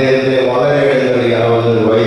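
A man's voice through a handheld microphone, drawing out one long, level-pitched intoned phrase like a chant.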